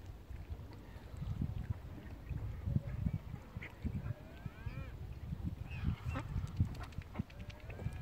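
Mallard ducks on the water giving a few short quacking calls, clearest around the middle and again a second or so later. Underneath runs a low, uneven rumble at the microphone.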